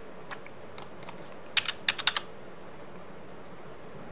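Typing on a computer keyboard: a few scattered keystrokes, then a quick run of about five louder key presses around the middle.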